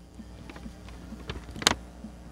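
A folded paper instruction sheet being handled, giving a few soft crackles and one louder crinkle about one and a half seconds in.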